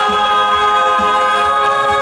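A female singer's live vocal holding one long, steady note, over a backing band track with a regular beat underneath.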